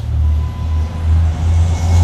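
A loud, low rumble that swells at the start and keeps on, uneven in strength.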